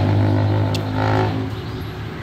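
A man's closed-mouth hum of appreciation, a steady low "mmm" while chewing a mouthful of food, fading after about a second and a half.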